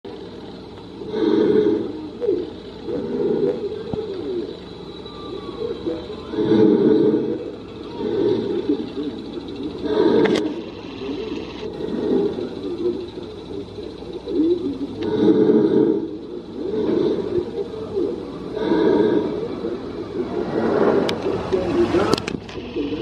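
Muffled, indistinct voices of people talking, swelling and fading every couple of seconds, with a sharp click about ten seconds in.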